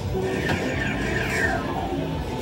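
Electronic music playing from a coin-operated kiddie ride's speaker, with a run of falling electronic tones about halfway in.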